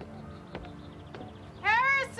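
Soft background music. Near the end a loud, high pitched call slides up in pitch and then holds.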